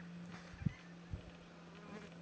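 A steady low buzzing hum with a few short, soft low thumps, the loudest about two-thirds of a second in.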